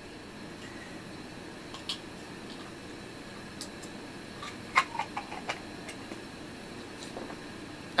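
Small clicks and taps of plastic dice and a clear plastic case being handled and fitted together, a quick cluster of them about five seconds in, over a steady low room hum.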